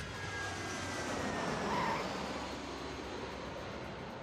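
Jet airliner engine noise, a steady rush that swells to a peak about two seconds in and then eases off, with a faint falling whine: a plane coming in to land.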